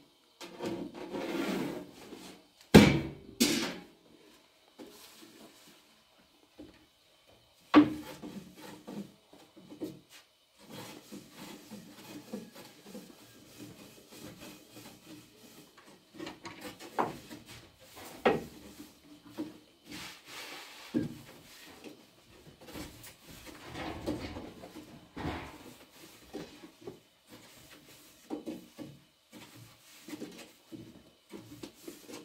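A long thin wooden rolling pin rolling out flatbread dough on a low wooden board, rubbing and tapping against it. There are a few loud sharp knocks in the first seconds and softer knocks throughout.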